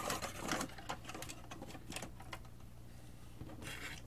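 Irregular light clicks and taps of hands handling small objects on a workbench.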